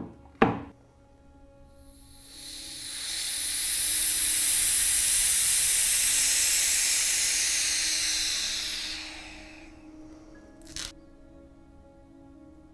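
Air rushing back into an acrylic vacuum chamber through its release valve: a long hiss that swells, peaks and fades away over about seven seconds as the chamber returns to atmospheric pressure. Two sharp knocks come right at the start and another near the end.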